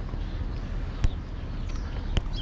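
Outdoor city street ambience: a steady low rumble, with one sharp click about a second in.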